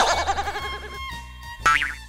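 Cartoon sound effects over background music. A wobbling, warbling tone sounds at the start and fades out over the first second, then a short rising sound comes near the end.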